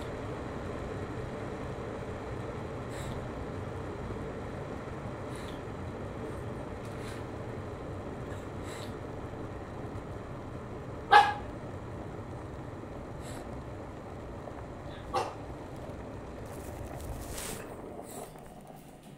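A dog barks once, loud and short, about eleven seconds in, and once more, fainter, about four seconds later, over a steady background hiss.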